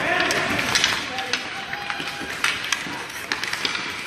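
Hockey sticks and puck clacking against each other and the ice in a scramble for the puck, with skate blades scraping and distant voices echoing in the rink.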